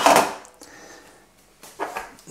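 A single clunk of a stainless steel pot lid being set down, fading away within about half a second.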